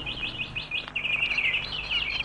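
Small songbirds chirping and twittering, with a quick run of high chirps from about a second in.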